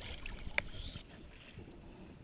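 Seawater lapping and sloshing around a camera held at the surface beside an inflatable boat, with a single sharp click a little over half a second in.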